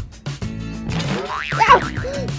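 Background music, a light plucked-string tune with a steady beat. In the second half a wavering tone glides up and down over it.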